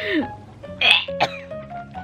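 Background music, over which a woman makes two short, strained noises of disgust, one at the start and one about a second in, while she threads a leech onto a fishing hook.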